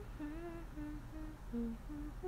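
A woman humming a short tune with her lips closed, about seven brief held notes stepping up and down in pitch.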